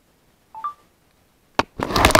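A short electronic beep of two quick notes, the second higher, from a smartphone. About a second later, a sharp click, then loud handling noise.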